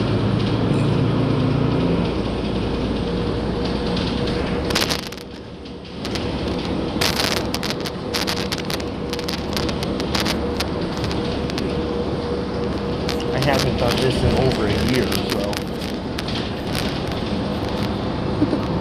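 Cabin noise inside a running 2018 Gillig transit bus: a steady rumble and hiss with many short rattles and clicks, briefly quieter about five seconds in.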